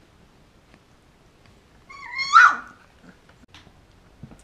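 A 20-day-old golden retriever puppy gives one short, high-pitched squeal about halfway through while playing with its littermates.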